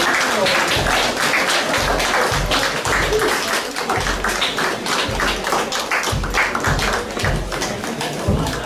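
Marching band playing as it marches in, its drums beating a steady march rhythm with repeated low bass-drum thumps.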